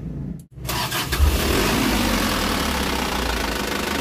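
Isuzu Elf NLR 55 microbus diesel engine starting about a second in, then running at a steady idle, heard close up at the open engine bay.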